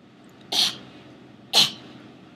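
Two short, sharp breathy bursts from a person voicing a mouse puppet, about a second apart, the second slightly louder.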